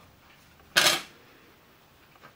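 One short handling noise about a second in, the mini PC's removed lid being set down on the work mat; otherwise faint room tone.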